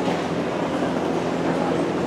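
Steady, echoing din of a large gymnasium during a ballroom dance heat: dance music over the loudspeakers blended with a constant murmur of spectators.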